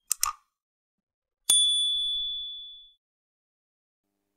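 A quick double mouse click, then about a second and a half in a single bright bell ding that rings and fades out over about a second and a half: the sound effects of an animated YouTube subscribe button and its notification bell.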